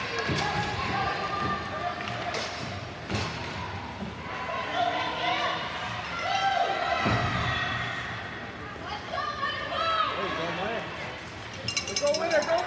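Ice hockey game sound: voices of players and spectators shouting and calling across the rink, with several sharp clacks of sticks and puck, a quick cluster of them near the end.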